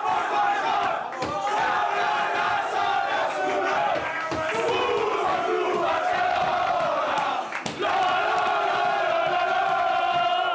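A crowd of men in a dressing room singing a club chant together at full voice, mixed with shouts and cheers, the sung notes held in long unbroken lines.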